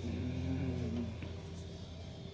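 Quiet room tone under a steady low hum, with a faint pitched sound in the first second and one small click a little after the middle.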